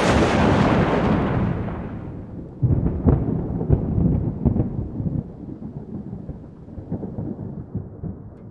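A thunderclap: a loud crack that trails off into rolling rumble, with a second stretch of rumbling about three seconds in that slowly dies away.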